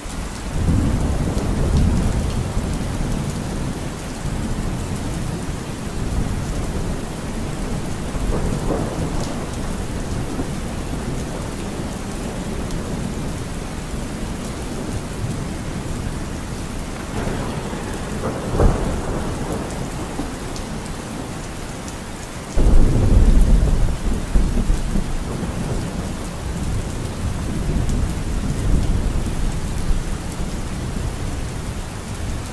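Recording of steady rain with rolling thunder. A rumble swells up right at the start, a sharper crack comes about 19 seconds in, and the loudest roll of thunder breaks in suddenly about 23 seconds in.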